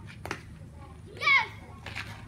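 A child's short, high-pitched shout with a wavering pitch about a second in, the loudest sound here, with a couple of sharp clicks around it as children play.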